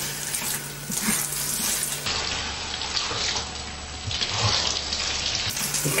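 Wet, mushy fried rice being stirred and scraped with a wooden spoon in a wok, a soft sizzling, squishing noise that marks the rice as soggy; a low steady hum runs underneath.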